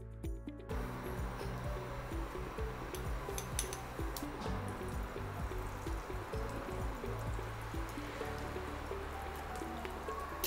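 Background instrumental music with sustained low notes, over a faint crackle of spice dropped into hot cooking oil in a kadhai.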